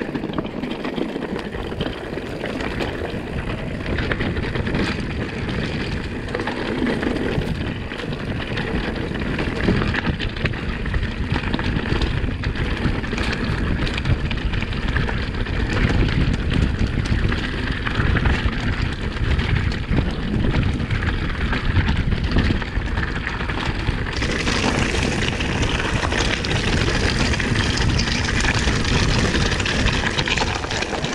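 Electric mountain bike ridden over rocky dirt singletrack: a steady rumble of tyres on loose stones, with the bike rattling and knocking over bumps throughout. The hiss grows brighter about three-quarters of the way through.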